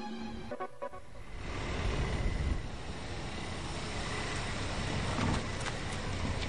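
A car driving along a street: steady road and traffic noise that comes up about a second and a half in.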